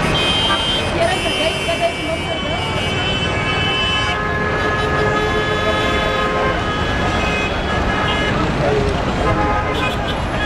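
Busy street traffic noise with car horns honking; several horns are held at once for a few seconds in the middle. Voices are mixed in.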